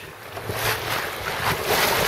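Wind buffeting the microphone over choppy water rushing and splashing along the hull of a Drascombe Coaster under sail, quieter for the first half second.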